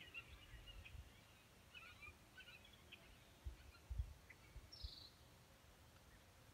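Near silence with faint, scattered bird chirps and a few soft low thumps.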